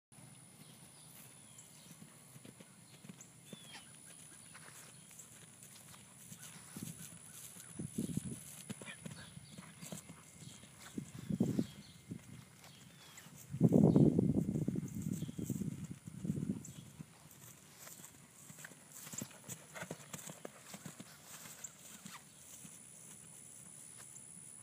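Thoroughbred horse's hooves cantering on grass: soft, dull hoofbeats that grow loud as the horse passes close, loudest in the middle, then fade as it moves away.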